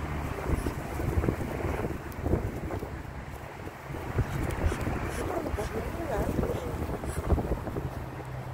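Wind buffeting the microphone: a steady rumbling hiss.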